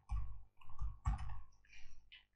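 Computer keyboard typing: short runs of keystroke clicks.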